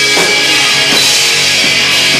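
Doom metal band playing live through a club PA: heavy distorted guitars and sustained keyboard over a slow drum beat, a hit about every three-quarters of a second.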